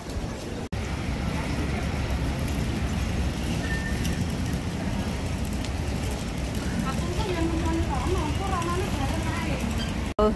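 Steady city street noise: a low traffic rumble under an even hiss, with a brief dropout under a second in and faint voices of passers-by toward the end.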